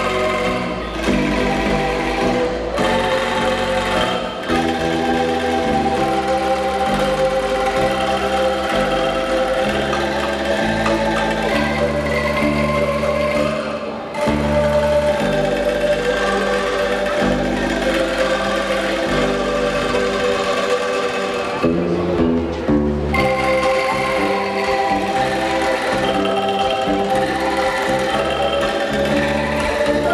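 Angklung orchestra playing a melody in held, shaken bamboo notes over a stepping bass line.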